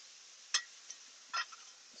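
Langostino tails sizzling faintly in olive oil on a hot flat-top griddle, a steady hiss. A sharp click about half a second in and a short scrape a little under a second later come from the metal spatula working the shellfish.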